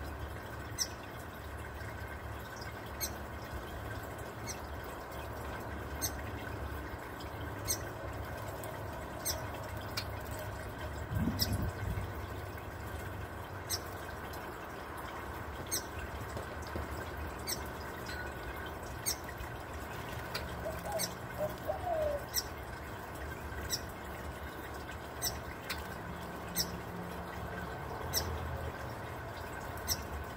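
Small ball fountain in a birdbath trickling and bubbling steadily, with very short, high-pitched bird chips every second or two. There is a brief low bump near the middle.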